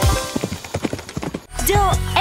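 Clip-clop hoofbeat sound effects of a galloping cartoon bull, a quick run of knocks over fading backing music. About a second and a half in, a jingle with sliding pitch begins.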